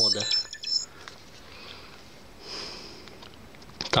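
A short, high electronic beep from the SJ4000 action camera as its front mode button is pressed, then quiet handling, with a single sniff about two and a half seconds in.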